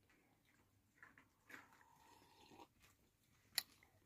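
Near silence: room tone with a few faint soft sounds and one short, sharp click just before the end.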